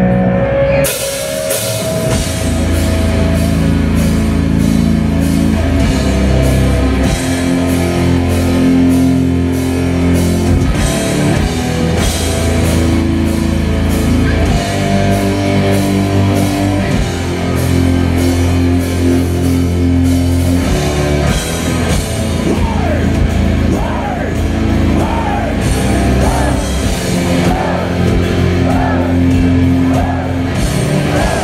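Melodic death metal band playing live: heavily distorted electric guitars and bass chugging over fast, dense drum-kit beats, the song kicking in about a second in.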